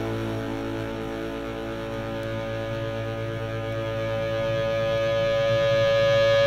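Rock music playing from a vinyl record on a turntable: a single sustained chord held steadily and swelling gradually louder.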